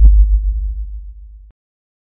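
The fading tail of a deep electronic sub-bass boom from the trailer's soundtrack, which cuts off to silence about a second and a half in.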